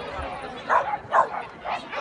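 A dog barking three times, about half a second apart, over background chatter.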